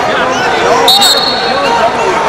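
Wrestling arena crowd and coaches shouting over one another, with a referee's whistle blast about a second in, held for roughly a second.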